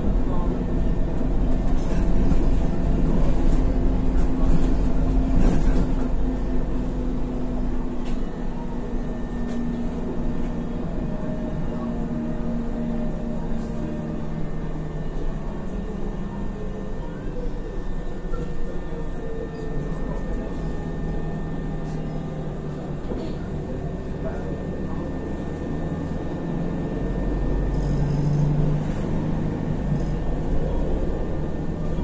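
Inside an Isuzu Novociti Life city bus on the move: the engine and drivetrain run steadily under a low road rumble, their tones gliding slowly in pitch as the bus changes speed, with a low swell near the end.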